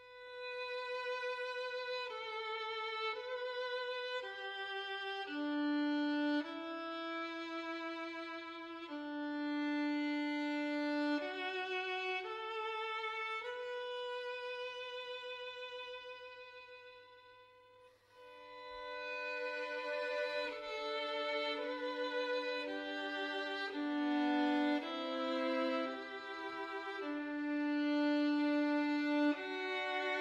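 Slow violin melody of long held notes with vibrato. It dies away about 17 seconds in, then starts again.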